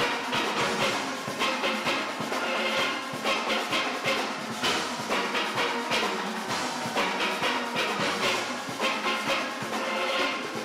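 A large steel orchestra playing: many steel pans struck together in a quick, driving rhythm, with percussion beneath.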